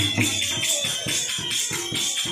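Instrumental bhajan accompaniment with no voice: drum strokes in a quick, steady rhythm of about four beats a second, with jingling, rattling percussion running over them.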